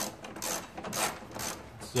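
Ratchet wrench tightening a 10 mm fastener on the engine, clicking in short bursts about twice a second.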